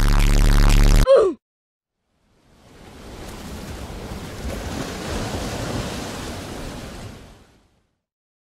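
A loud droning tone cuts off about a second in with a short falling glide. After a second of silence, the rush of ocean surf fades in, swells and fades away again over about five seconds.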